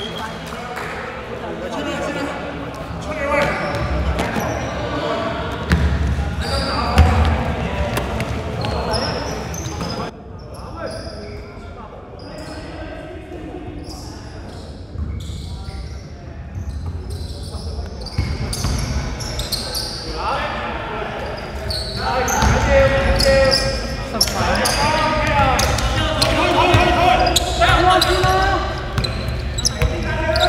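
Indistinct voices echoing around a large sports hall during a basketball game, with a basketball bouncing on the wooden court. The sound goes quieter and duller for several seconds in the middle.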